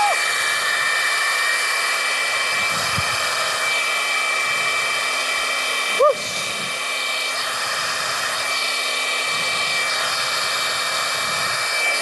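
Powered air blower running steadily through a long tube, a loud rush of air with a steady whine, blowing across the top of a toilet-paper roll so the paper is drawn up into the stream and flies off.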